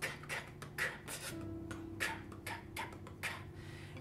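Drum kit with Zildjian cymbals played in a simple groove: a steady run of drum hits with cymbal shimmer.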